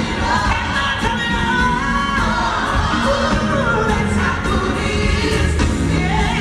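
Female gospel singer singing live into a microphone, sliding through long, bending vocal runs, over band accompaniment with steady bass.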